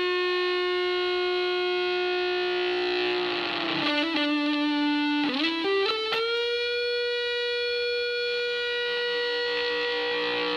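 Electric guitar (a Telecaster) played through an Antech vintage germanium fuzz pedal, in its three-transistor Tone Bender-style version, into a small tube amp. A long fuzzed note sustains, bends down about three seconds in, gives way to a few quick notes, and then a new note bends slightly up and is held with long sustain.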